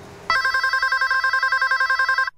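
Electronic telephone ringing: a rapid trilling warble between high tones, starting a moment in, lasting about two seconds and cutting off abruptly.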